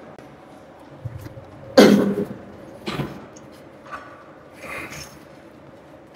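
Short breathy sounds from a man, like hard exhales or throat clearing, three times; the loudest is about two seconds in.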